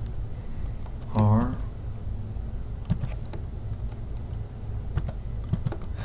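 Computer keyboard keystrokes: a handful of separate, unevenly spaced clicks as characters are typed.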